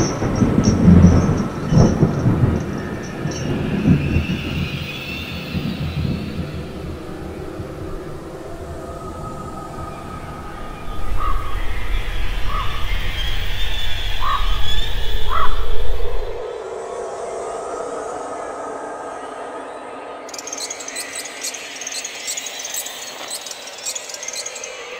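Spatula scraping and squelching hot fudge on a marble slab, with a few short squeaks. A loud low rumble comes in the first few seconds and again for about five seconds midway.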